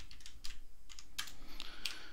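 Typing on a computer keyboard: a handful of separate keystrokes at an uneven pace.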